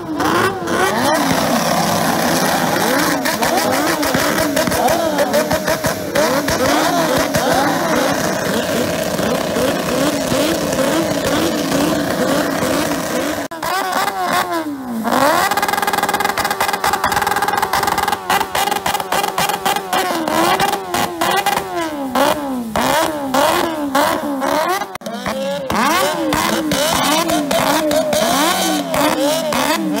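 Motorcycle engines revved hard and bounced off the rev limiter, the pitch swinging up and down over and over with sharp cut-outs and crackles. About halfway through the revs drop briefly, then climb and bounce again.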